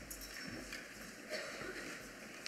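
A quiet hall with a few faint, scattered knocks and rustles and some faint murmuring voices.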